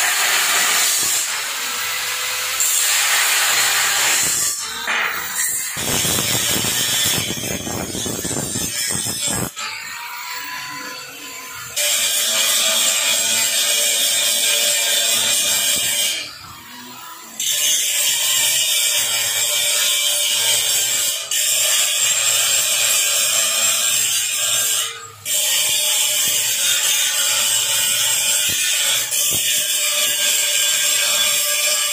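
Handheld electric angle grinder grinding a welded steel-tube gate frame, a loud steady whine with short breaks where the disc comes off the metal, about 16 and 25 seconds in.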